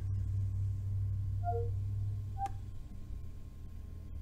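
A steady low hum, with a few faint short electronic beeps about a second and a half in and a soft click with one more beep shortly after, from a Windows 10 PC's Cortana voice assistant as it processes a spoken command.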